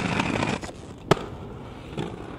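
Aggressive inline skates grinding along a stone ledge: a rough scrape for the first half second or so, then a single sharp clack as the skates land on the pavement about a second in, followed by faint rolling.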